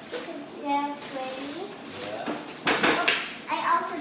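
A young girl's high-pitched voice, vocalising in sounds without clear words, broken about two and a half seconds in by a brief noisy burst, the loudest moment.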